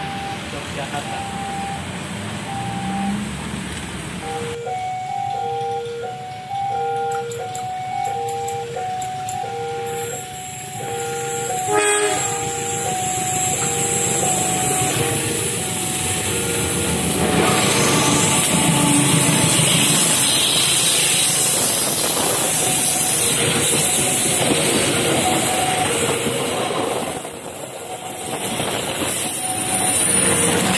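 Level-crossing warning alarm sounding a repeating two-tone chime, about one high-low cycle a second, with a brief loud blast about twelve seconds in. From about seventeen seconds a CC 201 diesel-electric locomotive and its passenger coaches pass close by, and the loud rumble of engine and wheels builds while the chime keeps going.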